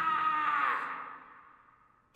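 A woman's long, high scream that bends down in pitch and fades out over the second half.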